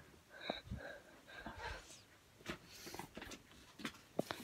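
Faint breathing close to the microphone, with a few short soft squeaks and then several small clicks and knocks of handling.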